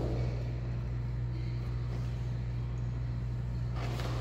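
Steady low machinery hum in a tiled indoor pool room, like pool circulation or ventilation equipment running. Near the end, a soft splash as a child in a life vest slides off the edge into the water.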